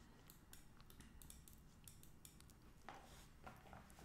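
Near silence with a few faint clicks, a small cluster of them about three seconds in.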